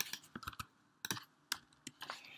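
Computer keyboard typing: about eight separate keystrokes at irregular intervals.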